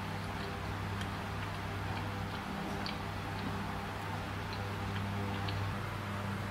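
A steady low hum, with faint, irregularly spaced ticks and clicks over it.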